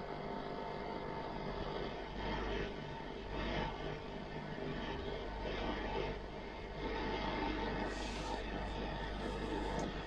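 Steady receiver noise, a hiss with small swells, from a single-tube 6J1 shortwave SDR receiver with no antenna connected, heard through the software's audio output. The input variable capacitor is being turned for the strongest noise, the sign that the front end is peaked on the wanted frequency.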